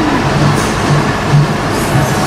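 Steady, loud rushing noise of a Korean barbecue table's grill and overhead extraction hood, with an irregular low rumble underneath.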